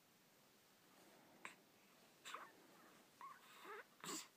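A baby's faint cooing squeaks, a few short pitched sounds that bend in pitch, with a small click about a second and a half in.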